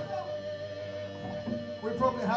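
Lull between songs at a live punk-rock show: electric guitar amplifiers left on, giving a steady held tone, with a few faint guitar sounds and some low voices.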